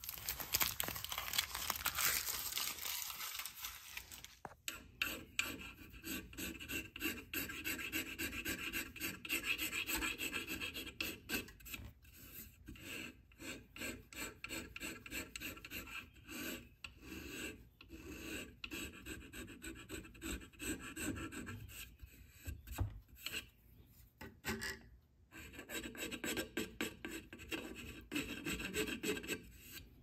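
Masking tape being peeled away for the first few seconds, then a small round Iwasaki rasp filing cured epoxy and wood on the repaired horn of a hand plane's tote in quick, repeated back-and-forth strokes, with brief pauses.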